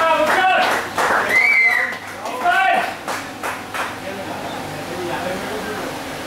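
Voices calling out and talking, with no words made out: several loud calls in the first three seconds, one of them a high call that rises and falls, then quieter voices.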